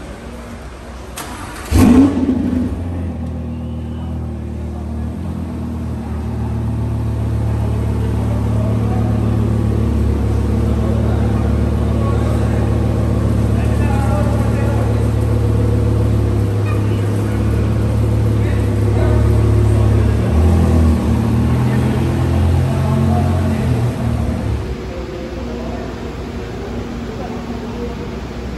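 Lamborghini Huracán V10 engine starting with one loud burst about two seconds in, then running steadily at a low idle-like level for around twenty seconds before being switched off shortly before the end.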